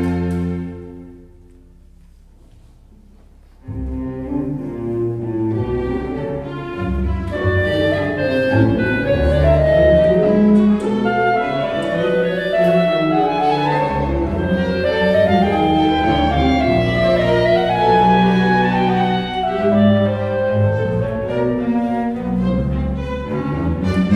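String orchestra with a solo clarinet, the cellos and double basses prominent. A held chord dies away in the first second, and after a pause of about three seconds the ensemble comes in suddenly and plays on with moving melodic lines over the low strings.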